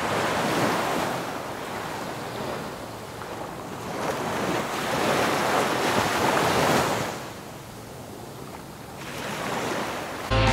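Ocean surf breaking and washing up the sand at the water's edge, surging louder twice and ebbing quieter between surges.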